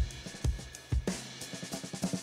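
Background music with a steady drum beat, about two drum hits a second.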